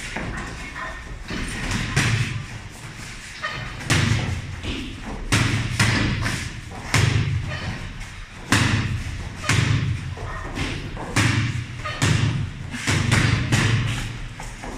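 Repeated thuds of kicks and gloved punches landing on punching bags, including a water-filled bag, at irregular intervals of about one to two a second.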